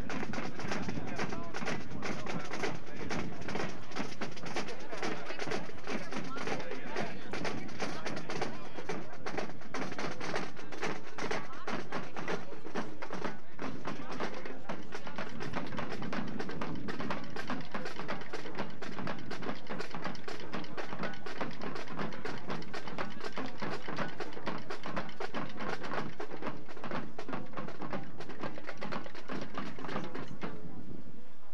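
Marching band playing: brass with drum strokes, picked up by a camcorder microphone, with people talking close to it.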